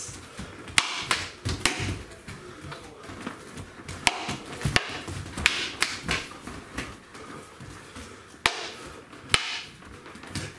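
Sparring weapons in a stick fight: sticks and a training tomahawk striking each other, a buckler, padded gloves and helmets, giving sharp cracks at irregular intervals, about eight of them, some in quick pairs.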